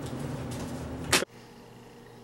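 Steady room noise with a low hum, broken about a second in by one short, sharp swish or knock; right after it the sound drops abruptly to much quieter room tone.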